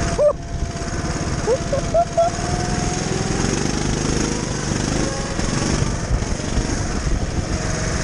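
Small petrol engine of a rental go-kart running steadily under way, picked up by an onboard camera on the kart, with a few short high squeals in the first couple of seconds.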